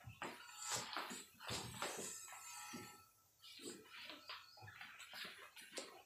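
Faint, irregular footsteps of several people walking across a tiled floor, with a short pause about three seconds in.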